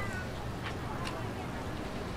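Steady outdoor market ambience, with a short high-pitched call right at the start, like a meow or a voice, and two sharp clicks about a second in.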